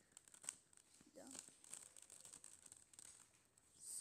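Faint clicking and rattling of a plastic 3x3 Rubik's cube as its layers are turned by hand, in quick irregular ticks.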